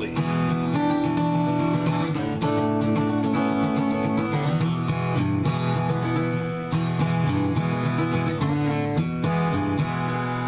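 Gibson J-50 acoustic guitar strummed through a blues pattern of chords and licks, the chord changing every second or two.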